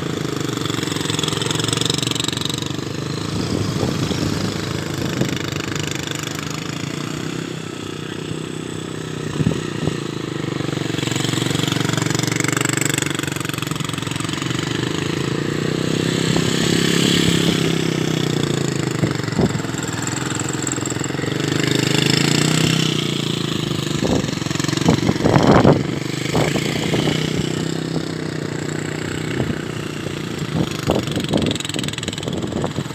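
Motorcycle engine rising and falling in pitch as the throttle is opened and closed over and over, the bike ridden hard through tight turns around a cone course. A few sharp clicks come close together near the end.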